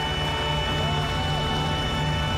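A live orchestra playing, with long held notes over a full low register.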